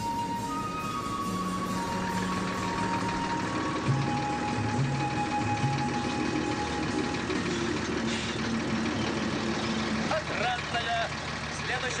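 A film-score melody for the first few seconds, over the steady running of an Ikarus-260 city bus's diesel engine. Voices come in near the end.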